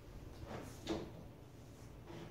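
Faint handling sounds: two short rustles, about half a second and a second in, as hair-product containers are reached for and moved on a low shelf.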